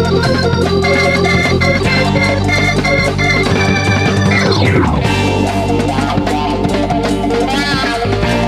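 Instrumental break of a rock song led by a Hammond-style organ playing sustained chords over bass and guitar. About halfway through comes a long falling pitch sweep.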